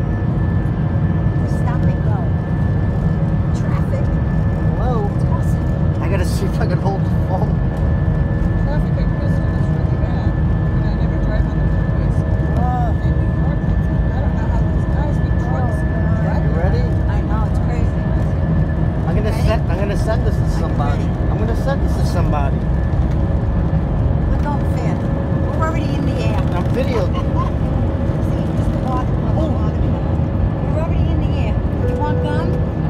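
Airbus A320 jet engines at takeoff power heard from inside the cabin: a loud, steady rumble with an even high whine as the plane rolls down the runway and lifts off. Voices in the cabin sound over it.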